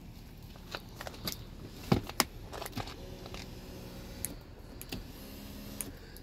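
Power seat adjustment motor of a 2015 Audi S5 running with a steady hum for over a second, then again briefly near the end, as the seat is moved to check that it works. Scattered clicks of handling and switches come before it.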